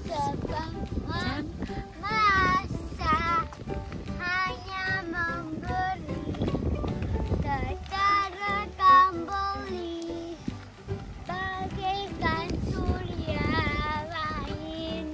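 A child singing a song, the voice wavering in pitch and moving from note to note, over a low rumble.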